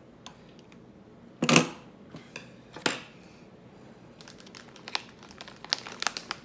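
Plastic bag of frozen avocado chunks crinkling as it is picked up and handled, with two loud rustles about one and a half and three seconds in, the first the loudest, then a run of small crackles and clicks near the end.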